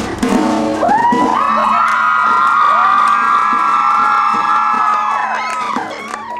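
A crowd of young fans screaming together: many high voices join in one after another about a second in, hold their screams for several seconds, and trail off near the end.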